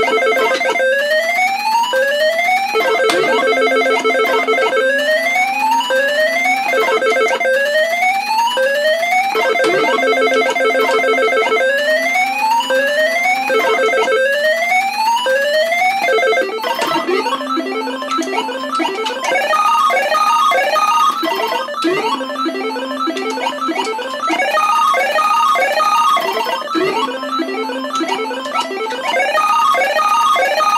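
Electronic sound effects of a Universal Tropicana 7st first-generation pachislot machine during play: a looping run of rising beeps over a steady low tone. About 17 seconds in it changes to a faster, busier chirping with short repeated high beeps.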